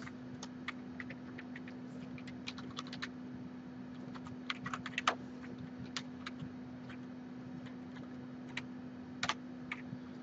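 Faint keystrokes on a computer keyboard, in short irregular runs with pauses, over a steady low hum.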